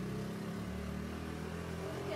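Small motor vehicle's engine running steadily as it drives along a paved street, a steady low hum.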